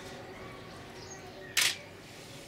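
A single loud, brief click-like noise about one and a half seconds in, over a faint background murmur.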